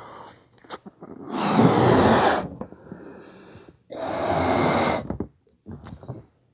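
A man blowing up a rubber party balloon by mouth: two long, forceful breaths blown into it, each lasting about a second, with quieter pauses between them while he breathes in.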